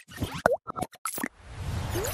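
Cartoon-style sound effects for an animated logo outro: a quick run of pops and plops, some with short pitch sweeps, then a swelling rush of noise near the end.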